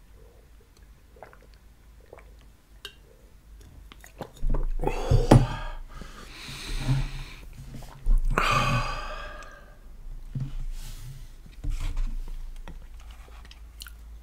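Close-miked drinking: faint swallowing clicks as water is gulped, then several loud, breathy exhales. The biggest exhales come a little before and just after the halfway point.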